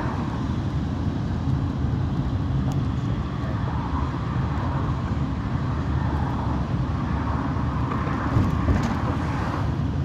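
A local bus driving along a road, heard from inside the cabin: a steady low rumble of engine and road noise.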